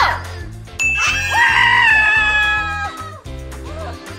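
Background music with a steady beat. Over it, a short cry right at the start, then a young woman's excited, high-pitched shriek from about a second in, held for about two seconds.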